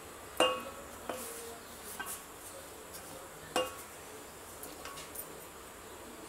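Kitchen utensils clinking: a handful of sharp knocks, each with a short ring. The loudest comes about half a second in and another about three and a half seconds in, with fainter ones between and near the end.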